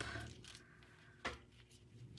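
Quiet room tone with one light tap about a second in, as paper card pieces are pressed and handled on a craft mat.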